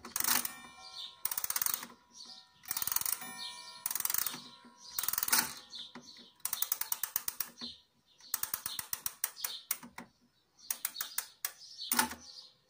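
Striking train of a 1960 Soviet pendulum wall clock: hammer blows on the gong ring out about five times, roughly a second apart, in the first half. Then come rapid runs of sharp mechanical clicking as the hands are turned.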